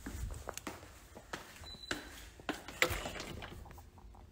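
Scattered light clicks and knocks over a low rumble: handling noise from a phone being moved about.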